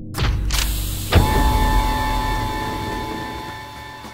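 Intro sound effect of heavy sliding sci-fi doors opening: two quick whooshes, then a hit about a second in that rings on in steady tones, slowly fading.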